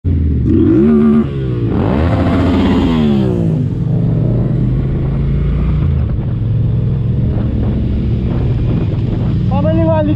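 Motorcycle engine revving, its pitch rising and falling in the first few seconds, then running at a steady pitch while riding.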